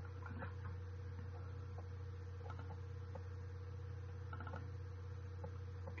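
A few faint computer mouse clicks, some in quick pairs, over a steady low electrical hum.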